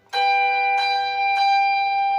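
Fender electric guitar in a clean tone: two high notes picked together and re-picked twice, ringing on steadily without fading.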